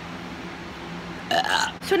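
Quiet room tone with a faint steady hum, then a short, rough, breathy vocal sound from the presenter's mouth about a second and a half in.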